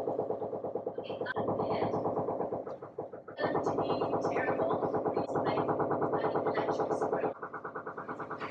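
Construction drilling in the building: a rapid, steady hammering. It breaks off briefly about three seconds in, starts again, and drops in level near the end.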